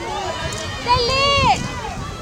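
Raised voices shouting across an open football pitch, several calls overlapping, the loudest a long high-pitched shout about a second in.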